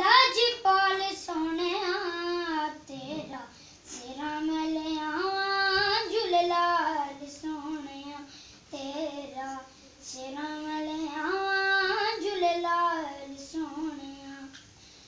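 A young boy singing unaccompanied, in long melodic phrases with a wavering, ornamented pitch and brief pauses for breath between them.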